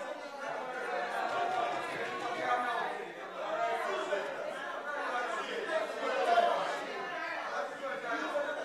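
Indistinct chatter of many voices talking over one another in a large chamber, with no single voice clear.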